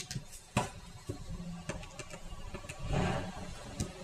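Small clicks and taps of rubber loom bands being stretched onto and pulled over clear plastic loom pegs by hand, with a sharper tap about half a second in and a louder rustle of handling around three seconds in.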